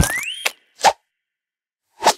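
Cartoon sound effects: a sharp hit and a rising whistle-like glide, then a short plop a little under a second in. The second half is silent.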